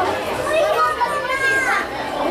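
Background chatter of people in a shop, with children's high-pitched voices among them.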